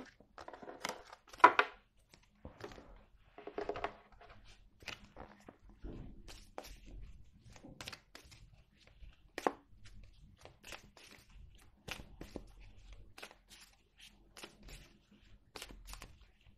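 Oracle cards being gathered up from a wooden table and shuffled by hand: irregular soft rustles and taps of card stock, with a sharper clack about a second and a half in.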